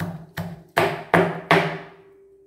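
Round stone pestle pounding green chillies and ginger in a stone mortar, crushing them: five sharp strikes a little under half a second apart.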